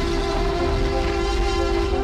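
A loud sustained horn-like chord of several steady tones, held evenly, as part of the edited intro soundtrack.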